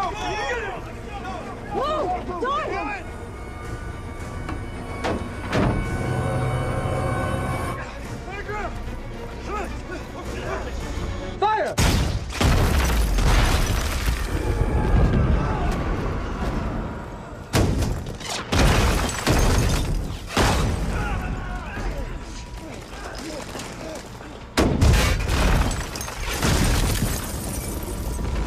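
Action-film sound mix: a music score with shouting voices at first, then several heavy explosions with debris, the first about twelve seconds in and another strong one near the end.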